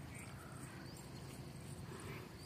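Quiet outdoor background noise with a low, uneven rumble and no distinct event.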